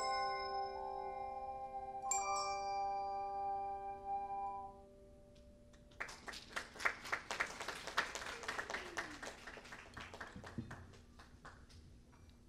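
Hand chimes and ocarinas play the closing chords of a hymn. A struck chord at the start and another about two seconds in ring out and die away by about five seconds. About six seconds in, hand clapping starts and tapers off near the end.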